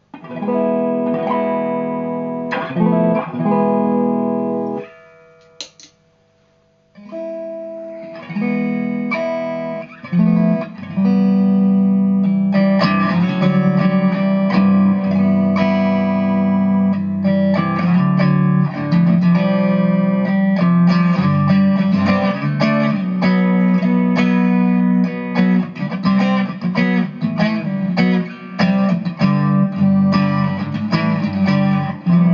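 Fender electric guitar strumming chords through a Digitech iStomp pedal running the Unplugged acoustic simulator, which voices it like an acoustic guitar. The chords ring, break off briefly about five seconds in, and from about ten seconds the strumming runs on continuously.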